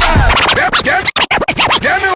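Vinyl record being scratched by hand on a Technics turntable: quick back-and-forth pitch sweeps, cut into short pieces with a few brief silences around the middle. The bass beat drops out early on the scratching's start.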